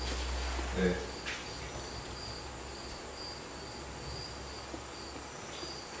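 A cricket chirping steadily, a short high chirp about twice a second.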